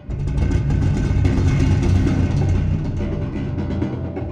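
Amplified 10-string Chapman Stick played by two-handed tapping: a dense run of rapid, percussive low bass notes with higher melody notes above, coming in suddenly loud at the start and staying loud.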